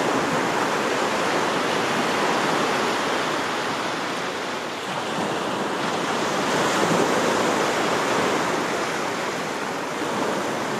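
Small waves washing onto a sandy beach: a steady surf wash that eases a little about halfway through and builds again.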